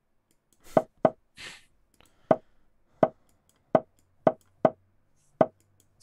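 Online chess board's move sound effect: about eight short plops at irregular intervals as a fast blitz game's moves are played.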